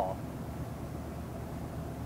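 Steady low drone of road and drivetrain noise inside the cab of a 2007 Tiffin Allegro Bus diesel pusher motorhome cruising at about 60 mph on the highway.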